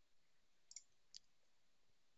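Near silence with two faint computer-mouse clicks, one about three-quarters of a second in and one just after a second in.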